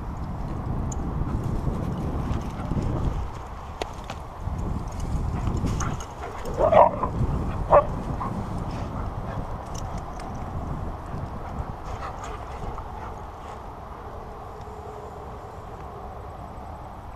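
Two huskies playing, with two short, loud yips about a second apart roughly seven seconds in, over a steady low rumble.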